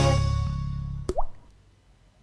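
The final chord of a TV programme's intro jingle dying away, then one short sound effect with a quickly rising pitch, like a drop or plop, about a second in.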